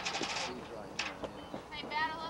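Several high-pitched voices shouting and calling out, overlapping, as girls' softball team chatter, with one short sharp click about a second in.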